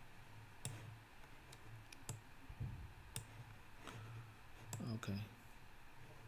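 A handful of separate clicks from a computer mouse and keyboard, roughly a second apart, over a low steady hum.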